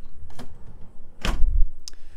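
A pull-out pantry cabinet pushed shut, closing with a thump about a second in, followed by a light click.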